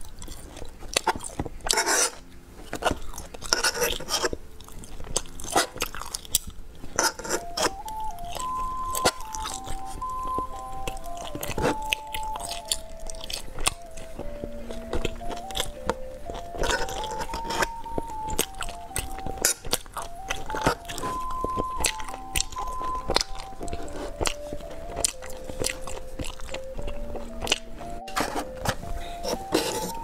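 Close-up chewing and biting of soft gummy candies, with sharp wet mouth clicks, over a simple plinking background melody that becomes clearer about seven seconds in.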